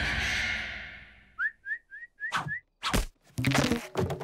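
Cartoon sound effects: a loud noisy rush that fades away over the first second or so, then five quick rising whistle-like chirps, followed by a few sharp thuds.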